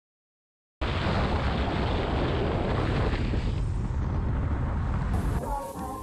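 Wind buffeting a camera microphone: a loud, steady rushing noise, heaviest in the low end, that starts abruptly about a second in after a moment of dead silence.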